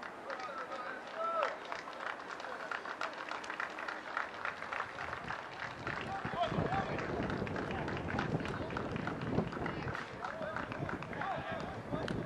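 Rugby players shouting and calling to each other on an open pitch, with many short taps and clicks scattered through; the sound grows fuller and heavier after about five seconds.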